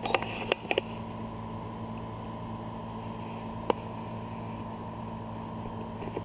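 Steady machine hum in a boat cabin, several fixed tones under a hiss. A few sharp clicks of the camera being handled in the first second, and one more about midway.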